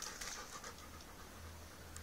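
Rottweiler panting faintly, with a steady low hum underneath.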